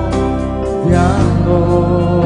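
Live Christian worship music: a man singing over sustained chords from a Korg Pa700 arranger keyboard, with the bass note changing about a second in.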